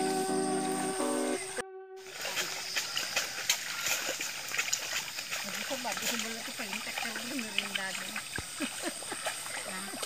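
Background music ends about a second in; then muddy water splashes and sloshes as rice seedlings are pulled up from a flooded nursery bed, with voices talking in the distance.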